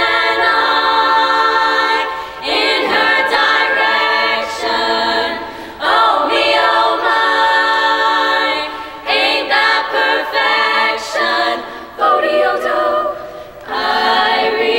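Girls' chamber choir singing a cappella, the phrases breaking off briefly every two to three seconds.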